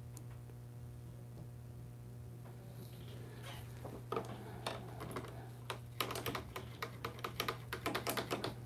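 Faint steady low hum, then from about four seconds in a run of light clicks and taps that comes quicker near the end, from brushes and paint bottles being handled.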